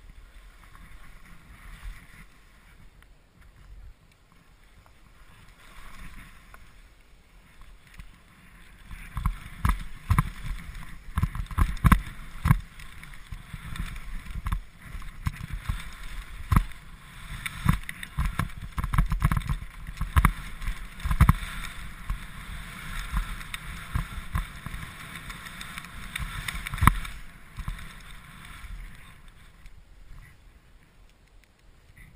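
Skis hissing and swishing through deep powder snow, with a low rumble. Quieter for the first several seconds, then louder and busier from about nine seconds in, with frequent sharp knocks and thumps as the skis ride over the snow.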